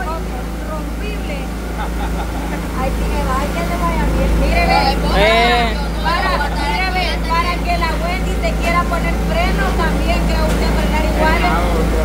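Several people's voices talking over one another in lively, animated conversation, over a steady low rumble.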